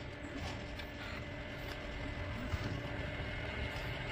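ABB YuMi collaborative robot arm moving under its program in automatic mode: its joint motors give a low steady hum with a few thin steady tones, and a few faint clicks come in the first second.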